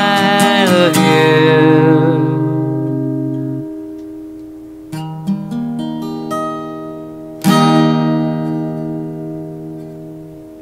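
Acoustic guitar closing a song: a sung line ends about a second in over a ringing chord that slowly fades, then a few single plucked notes come around the middle, and a final strummed chord near the end rings out and dies away. The stray notes at the close are what the player blames on his finger slipping on the strings.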